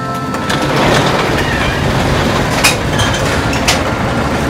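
Automatic car wash machinery running: a steady rushing noise that swells in about half a second in, with two sharp knocks about a second apart near the end. Held music tones fade out at the start.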